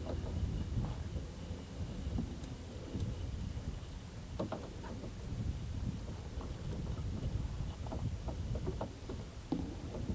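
Wind rumbling on the microphone over water lapping against a small boat's hull at sea, with a few light knocks about halfway through and near the end.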